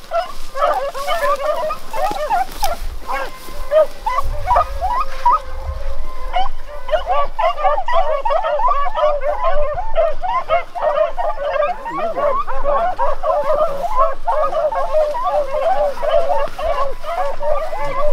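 A pack of beagles baying together while running a rabbit's track, many overlapping calls going on without a break.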